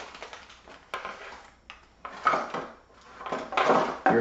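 Cardboard packaging and plastic wrapping being handled: an irregular rustling and scraping, with a sharp click about a second in and louder rustles about two seconds in and near the end.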